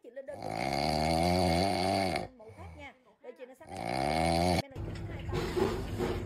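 French bulldog snoring while lying on its back asleep: two long, drawn-out snores with a pause between them. About three-quarters of the way through it gives way abruptly to a steadier, lower noise.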